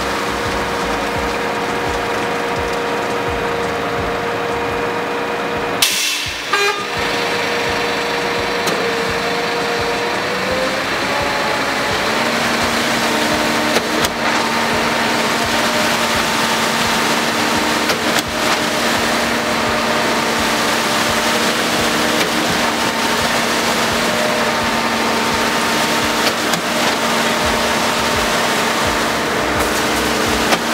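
Diesel engines of a concrete mixer truck and a concrete pump running steadily and loud while the mixer drum turns and discharges concrete down its chute into the pump hopper. There is a short sharp interruption about six seconds in, and the engine pitch shifts around ten seconds in before settling again.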